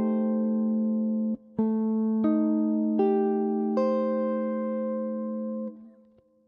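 Clean electric guitar playing jazz comping on an Am7b5 chord at the 7th fret. A ringing chord is cut off a little over a second in. A new chord is struck, and its upper notes change three times about three-quarters of a second apart, the last voicing ringing until it dies away near the end.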